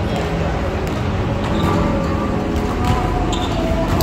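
Volleyball being played in a large, echoing gym: scattered ball hits and players' voices over a steady hall din.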